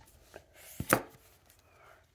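Hard plastic PSA graded-card slabs clacking as they are handled and swapped: a faint click, then two sharp clicks close together about a second in.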